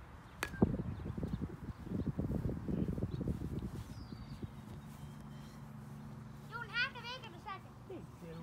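A single sharp crack of a plastic wiffle-ball bat striking a wiffle ball about half a second in, followed by a few seconds of low rumbling.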